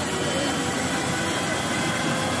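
Helicopter with a shrouded fan tail rotor running on the ground: a steady rush of turbine and rotor noise with a thin high whine over it.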